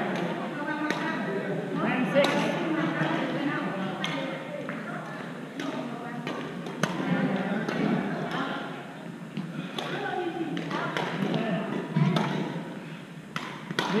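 Scattered sharp clicks of badminton rackets striking shuttlecocks, some close and some farther off, over a steady hubbub of voices echoing in a large gym hall.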